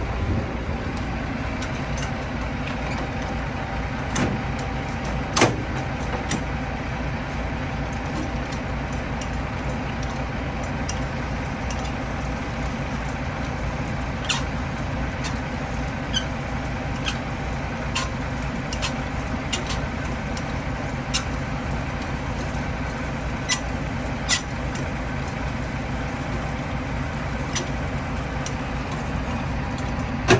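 Semi-truck tractor's diesel engine idling steadily, a continuous low drone. A scattering of short sharp clicks rises over it, the loudest about five seconds in.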